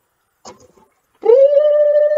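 A woman's voice drawing out the word "cold" in an exaggerated way, holding one long, high, steady note for about a second and a half from just over a second in.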